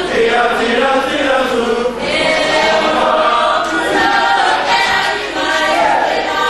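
A group of voices singing a song together in chorus, with long held sung lines.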